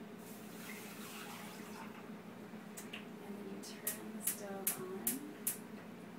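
Water poured from a glass measuring jug into a cooking pot, then a run of sharp clicks, about two or three a second, in the second half.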